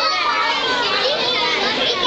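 Crowd of children's voices chattering and calling out over one another in a steady babble.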